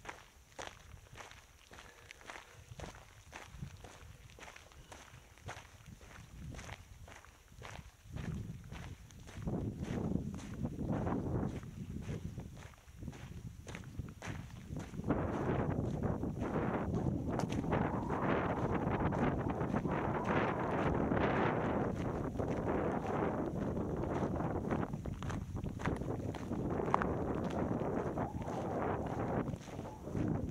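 Footsteps walking steadily on a salt-crusted trail, about two steps a second. From about halfway a louder steady rushing of wind on the microphone joins in.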